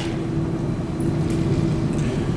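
Steady low room hum with a faint steady tone running through it.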